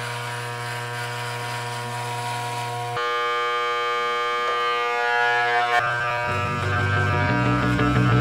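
Corded electric hair clippers buzzing steadily with a low hum, the tone shifting about three seconds in. Music with low bass notes comes in over the last couple of seconds.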